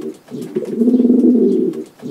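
Domestic pigeons cooing: a low, rolling phrase that repeats almost identically about every second and a half to two seconds, with a brief dip between phrases.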